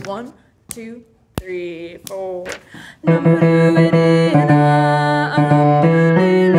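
A woman singing the bass line of an SATB choral piece. It opens with a near-pause broken by a sharp click and a few short vocal fragments, and about halfway through it picks up again with long held notes.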